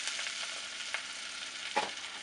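Melted butter with flour just added sizzling steadily in a saucepan at the start of a roux, with two short clicks, one about a second in and a louder one near the end.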